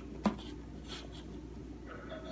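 Light kitchen handling sounds while food is dished onto a red paper plate: one sharp click about a quarter second in, then a few faint scrapes.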